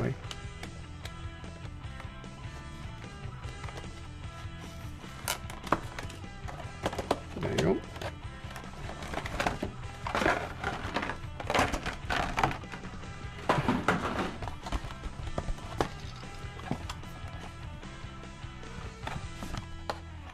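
Clear plastic toy packaging and paper being handled and opened, with irregular crinkling and crackling that is busiest in the middle, over steady quiet background music.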